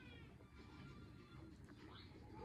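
A baby's short, faint, high-pitched squeal near the start, over near-silent room tone.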